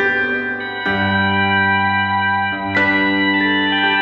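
Instrumental passage of a folk-rock song with no singing: sustained organ-like keyboard chords over guitar, the chord changing about a second in and again near three seconds.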